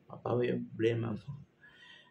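A man's voice singing a hymn unaccompanied: a few short, wavering sung syllables in the first second and a half, then a fainter trailing sound near the end.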